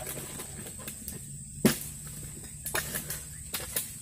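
A long-pole harvesting sickle working at an oil palm's fruit-bunch stalk high in the crown: faint scraping and ticks, with one sharp crack about one and a half seconds in, as the bunch is cut free.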